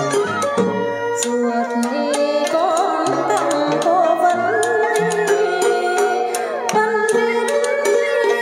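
Traditional Vietnamese chèo music: melodic instruments playing held and gliding notes over frequent sharp percussion clicks.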